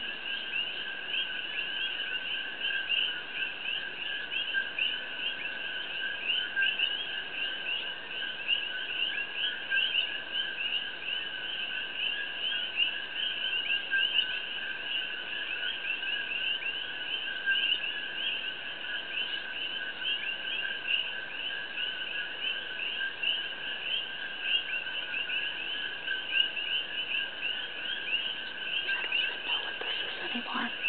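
A steady animal chorus with no pauses: rapid, pulsing high calls over a lower, steadier high tone.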